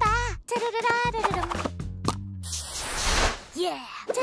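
A cartoon character's high voice singing in the morning-song manner, with wavering pitch over bouncy children's cartoon music. About two and a half seconds in, a burst of hissing noise lasts about a second, followed by a short falling voice glide.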